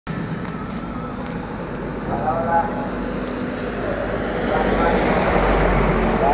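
Road traffic on a wet street: a passing vehicle's engine and tyre hiss swell near the end, with brief snatches of voices in the background.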